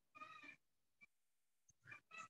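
A faint, short, pitched cry lasting about half a second, starting about a quarter second in, followed by a tiny chirp about a second in; otherwise near silence.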